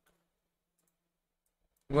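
Near silence with a few faint computer-mouse clicks.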